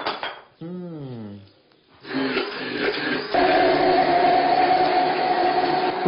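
A short falling "ah" of approval from a taster, then an electric blender starting up about two seconds in and running steadily as it whirs the ajo blanco, a chilled almond and garlic soup, with its pitch stepping up to a higher speed about three seconds in.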